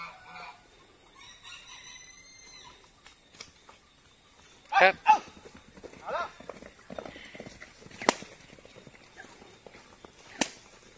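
A single sharp crack of a horse-training whip about eight seconds in, cracked to drive the horses on into a canter.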